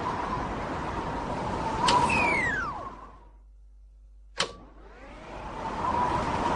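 A small electric motor running with a steady whine. It is clicked off about two seconds in and winds down, falling in pitch, then is clicked on again a little past four seconds and winds back up.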